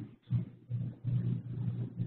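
A low, wordless voice sound, like a drawn-out hum or 'mmm', in three short stretches with brief gaps between.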